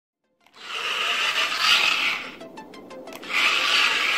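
A transforming RC robot car's motors and gears whirring as it changes from car to robot. The whirring comes in two stretches, with a quick run of about six clicks between them.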